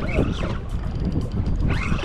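Wind buffeting the microphone out on open water, an uneven low rumble over the wash of the sea around a boat.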